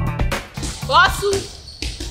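Background music with a bass line that cuts off about half a second in, followed by a short rising vocal exclamation and a single thud near the end.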